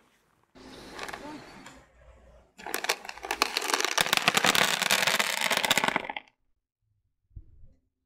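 Dried bean seeds poured onto a flat sheet, a dense rattle of many small hits lasting about three and a half seconds that stops suddenly. It follows a softer rustle.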